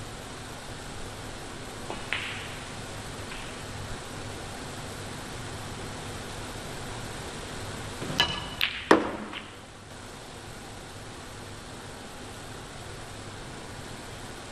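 Snooker balls clicking sharply: a single click about two seconds in, then a quick run of several clicks between eight and nine and a half seconds in, the loudest near nine seconds, over a steady background hiss.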